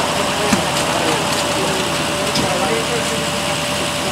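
Emergency vehicles idling at the scene: a steady engine drone with a constant hum running underneath. Voices talk faintly in the background.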